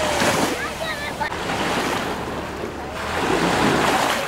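Small waves washing onto a sandy beach in calm bay water, the surge swelling briefly near the start and again near the end, with faint distant voices.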